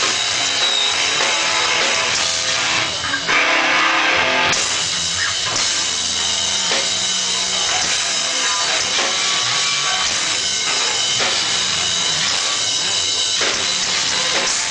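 Hardcore band playing live and loud: electric guitars and drum kit driving through the end of a song.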